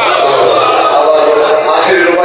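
A man's voice chanting Urdu poetry in a sung, melodic style into a microphone, amplified over loudspeakers.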